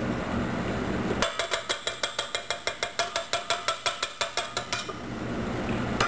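Rapid, evenly spaced clicking, about six clicks a second, which starts about a second in and stops shortly before the end, over a faint steady hum.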